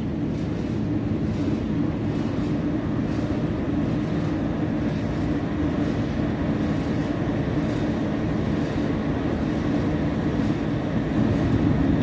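Restaurant rooftop exhaust fan running up to speed just after being switched on, a steady low hum and rush of air that takes a long time to come up. The fan is turned down on its speed control and drawing about 11 amps, over its 9-amp rating.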